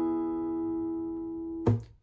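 A strummed chord on an acoustic guitar with a capo, ringing and slowly fading, then cut off abruptly with a short thump near the end.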